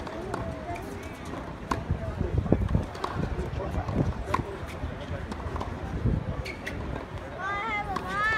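Tennis balls struck with racquets in a practice rally: several sharp pops at uneven intervals over the chatter of spectators. A voice calls out near the end.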